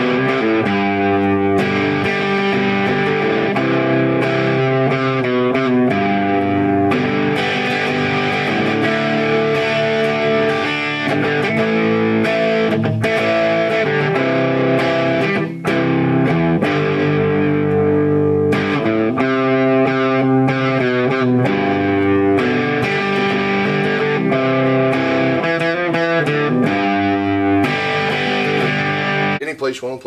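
Gibson SG Standard electric guitar with twin humbucker pickups, played through an amplifier: a continuous run of chords and ringing single notes, with one brief break just past halfway.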